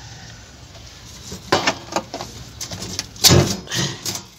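Loose 1.5 mm sheet-steel floor panel being pushed and worked by hand into the car's floor pan, giving a run of metal clunks and rattles, the loudest a little after three seconds in.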